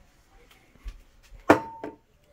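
Faint handling noise, then one sharp knock with a brief ringing note about a second and a half in, as a metal aerosol can of cooking spray is carried and bumped against a hard surface.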